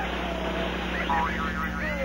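Cartoon sound effect of a small lawnmower engine running while the animated Whammy mows across the board. It is the sound of a Whammy landing, which wipes out the contestant's winnings.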